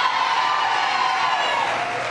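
Crowd cheering, with one long held whoop over it that fades near the end.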